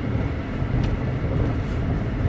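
Steady low rumble of a moving car heard from inside the cabin: engine and road noise.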